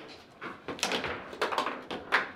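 Foosball table in play: the ball is struck by the plastic men, and the rods knock and slide in their bearings, giving a quick run of sharp knocks from about half a second in.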